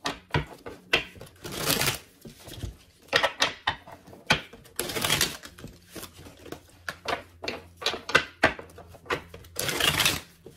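A deck of tarot cards shuffled by hand: a run of quick clicks and flicks of card on card, with longer rustling bursts about two seconds in, around five seconds and again near the end. A faint steady hum lies underneath.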